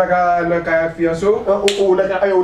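A man speaking animatedly, with one sharp snap about three-quarters of the way in.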